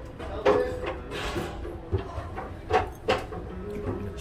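A few short clinks of a metal fork against a china plate, over faint background voices.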